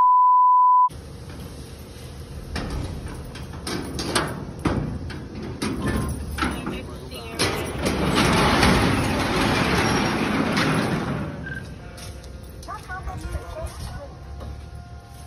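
A steady, loud test-tone beep lasting about a second from a colour-bars transition effect, followed by background noise with scattered knocks and a swell of rushing noise later on.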